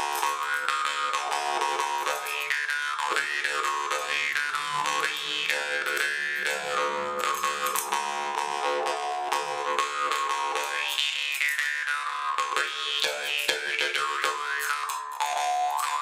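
A kubyz (Bashkir jaw harp) made by Rakhimgulov, played solo: a steady drone with an overtone melody sweeping up and down above it, driven by quick repeated plucks of the tongue.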